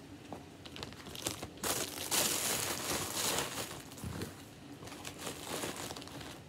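Thin plastic packaging bag crinkling and rustling as a piece of baby clothing is handled and pulled out of it, a few light crackles at first, then a loud dense rustle for about two seconds.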